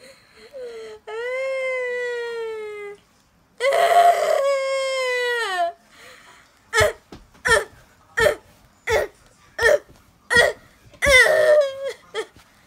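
A person's put-on, exaggerated crying voiced for a puppet: a long high wail about a second in, a louder rasping wail near the middle, then a run of about seven short sobs, the last one drawn out.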